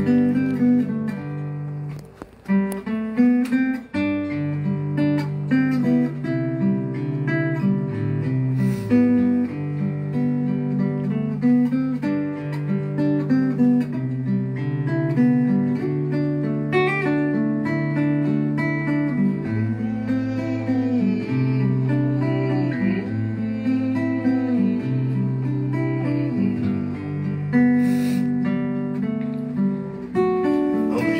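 Acoustic guitar played solo, chords picked and strummed over a steady low bass line, with a brief drop in level a couple of seconds in.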